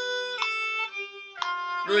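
Violin playing a C major scale in eighth notes, stepping down one note about every half second, over a steady G drone tone.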